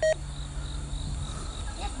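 Insects buzzing steadily over a low, even rumble, with a brief beep at the very start and a short spoken word near the end.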